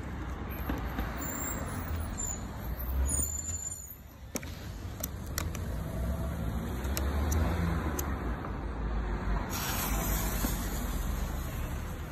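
Steady low outdoor street rumble, with a few sharp clicks and handling sounds as a firework fountain's fuse is lit with a lighter. A brief hiss comes a little before the end.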